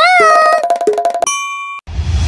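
Cartoon intro-logo sound effects: a pitched tone that swoops up and holds over rapid clicking, then a clear ding held for about half a second that cuts off suddenly.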